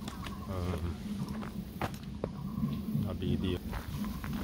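Footsteps on a dirt trail, with a few sharp clicks and other people's voices in the background.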